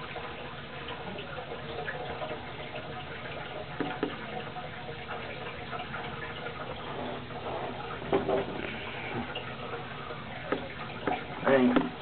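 Steady trickle and bubble of water in a turtle tank, with a few short knocks about four, eight and eleven seconds in.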